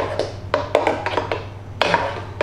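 A spoon clinking and scraping against the inside of a stainless-steel soup maker jug as thick soup is stirred, in irregular knocks a few times a second, with a louder knock near the end.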